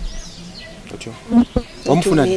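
A flying insect buzzing in a faint steady hum, with a short low murmur and a click a little past the middle.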